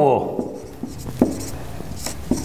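Handwriting during a lesson: a few short scratching strokes and taps of a writing tool, after a spoken word trails off.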